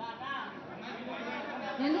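Speech only: several people talking over each other, one voice over a microphone.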